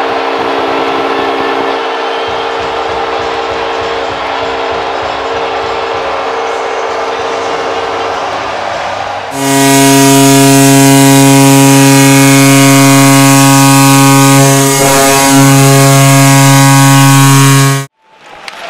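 Arena crowd noise with a steady horn-like tone under it after a goal. About nine seconds in it gives way to a much louder, sustained horn blast in a deep, chord-like pitch, which holds for about eight seconds and cuts off suddenly, in the manner of a hockey goal horn.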